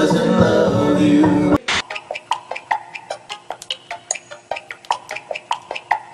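Group singing with music, cut off abruptly about one and a half seconds in. Then a Yamaha Tenori-on plays a looping sequenced pattern of short, plucked-sounding electronic notes, several a second.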